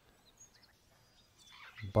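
Faint bird chirps, a few short high calls, over quiet outdoor ambience.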